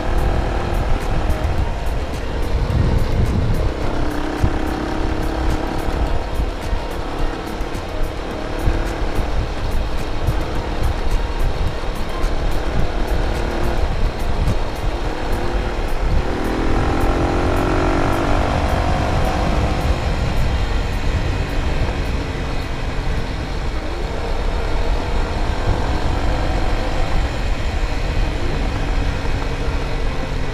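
Sport motorcycle's engine running at road speed under heavy wind rush on the microphone, its note rising as the bike accelerates a little past the halfway point.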